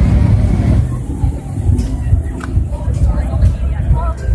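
Busy outdoor city ambience: a heavy, steady low rumble with faint voices of people in the crowd and a few light ticks.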